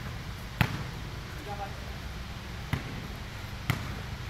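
A basketball bouncing on a concrete court: three separate bounces, about half a second in, near three seconds and just before the end, the first the loudest.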